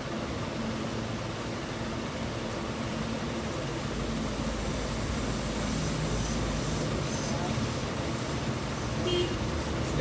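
Steady background noise with faint, indistinct voices in it.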